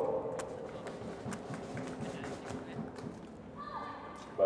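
Badminton rally: a string of short, sharp racket hits on the shuttlecock, irregularly spaced, with players' footfalls on the court.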